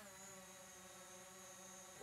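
Near silence, with only a faint, steady hum in the background.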